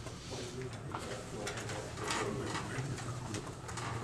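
Quiet meeting-room background: a low murmur of voices with a few brief rustles of paper as handouts are passed around.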